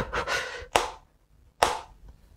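Two sharp finger flicks against the rind of a small whole watermelon, about a second apart, trying to split it; the melon does not crack.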